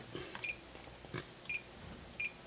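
Fluke 1587 FC insulation multimeter giving two short, high beeps, about a second apart, as its RANGE button is pressed to step through the ohm ranges. A faint button click comes between them.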